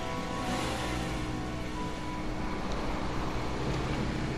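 A car pulling away and driving off, a steady noise of engine and tyres, over sustained notes of background music.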